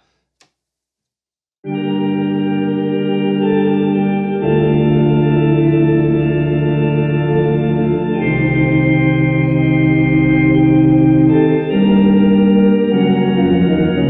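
Soundiron Sandy Creek Organ, a sampled vintage Thomas console organ through a Leslie speaker, playing sustained chords on its tibia voices with two microphone positions mixed. It comes in about two seconds in and moves through several held chords, such as A minor over C and G-flat over D-flat, changing every few seconds.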